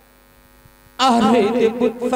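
Steady electrical hum from a stage PA system, then about a second in a voice through the microphone abruptly starts a loud, wavering sung line.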